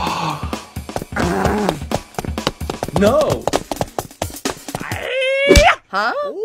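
Cartoon soundtrack: background music with a fast clicking beat, overlaid by a character's vocal sound effects, with short gliding cries and a long wailing cry near the end.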